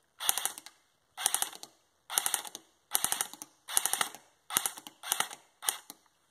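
Airsoft electric gun (AEG), plausibly the Lancer Tactical, firing about eight short full-auto bursts. Each burst is a quick rattle of a few shots, roughly one burst a second.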